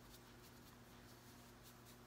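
Near silence: faint, irregular soft scratching of a makeup applicator rubbed over the skin of the jaw and chin while foundation is blended in, over a steady low hum.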